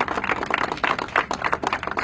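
Crowd applauding: many hands clapping at once, a dense irregular patter.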